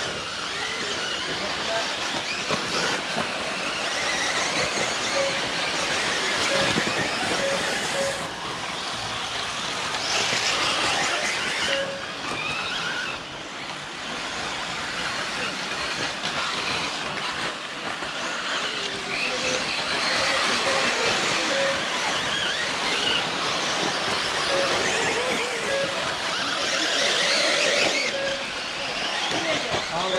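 1/8-scale electric RC buggies racing on a dirt track: a steady dense rush of motors and tyres, with thin whines that rise and fall now and then. Voices murmur in the background.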